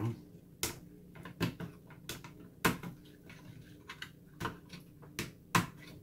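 Sharp plastic clicks of RAM slot retention latches being snapped open and memory sticks pulled from their DIMM slots on a desktop motherboard. There are about seven irregularly spaced clicks over a faint steady hum.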